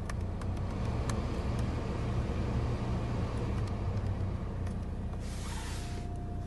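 Hyundai i30's diesel engine idling, a steady low rumble heard inside the cabin, with several clicks of climate-control buttons being pressed early on and a short hiss about five seconds in.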